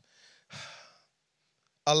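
A man's breath into a close handheld microphone: a faint, sigh-like exhale about half a second in, in a pause between spoken phrases.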